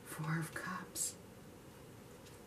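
A woman's short, soft remark muttered under her breath, over within about the first second; then only faint room tone.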